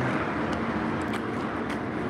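Steady city street noise, a traffic hum, with a few faint ticks.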